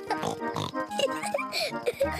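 A cartoon pig character's voice making pig snorts and vocal noises over light background music.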